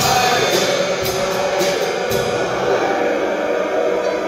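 Live music from a choir with piano and drum kit: the drummer's cymbals strike in a quick run of strokes that stops a little after two seconds in, while the ensemble's sound carries on.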